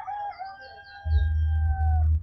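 A rooster crowing: one long call that falls slightly in pitch at its end, with a few high bird chirps early in the call. From about a second in there is a louder low rumble.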